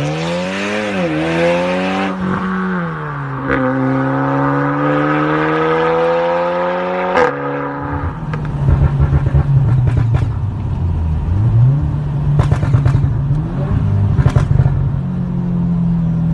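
Audi S3 8V's turbocharged four-cylinder through an ARMYTRIX valved exhaust, accelerating hard. The pitch climbs through the gears, with a sharp crack at the upshifts about 3.5 and 7 seconds in. About halfway through it turns to a rougher, choppier rumble with scattered pops.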